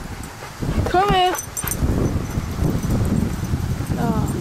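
One short, high-pitched voice call about a second in, rising then held, from a person calling a dog back, over a low rustling background.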